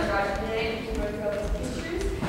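Actors' voices speaking lines from a stage, echoing in a large hall, with soft low thuds about twice a second underneath.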